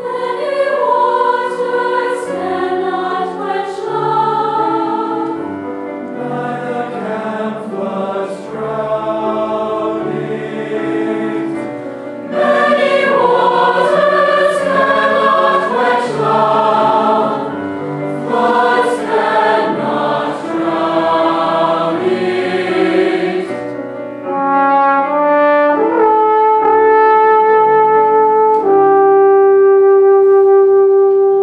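Large mixed choir singing a choral anthem with trombone accompaniment. In the last few seconds the music settles into long, steady held notes.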